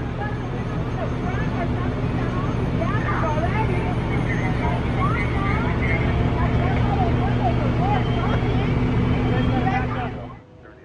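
Fire engine's engine running steadily at pump speed to supply the hose lines, a loud continuous drone with a low hum, with indistinct shouting voices over it. It cuts off suddenly at the end.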